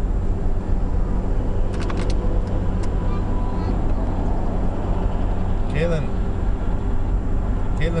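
Steady road and engine rumble inside the cabin of a moving car, with a few clicks around two seconds in.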